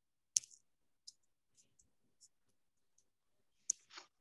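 Scattered clicks at a computer, from mouse and keys, as a new line is added to an on-screen list. There are a handful of short, sharp clicks: the loudest about a third of a second in, a few faint ones through the middle, and two close together near the end.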